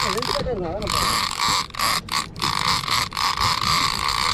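Penn International 30T conventional reel ratcheting in several spurts with short stops between, as its handle is cranked. A man's voice sounds briefly at the start.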